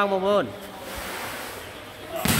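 A man's voice speaking, breaking off about half a second in. It is followed by a steady rushing noise like wind or distant surf, which grows slightly brighter toward the end.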